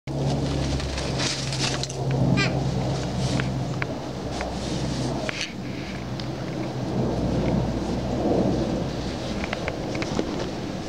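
A continuous low rumble with a steady low hum runs under scattered short clicks and crunches, as small boots move through snow and a plastic chair is knocked about. A brief warbling chirp comes about two seconds in.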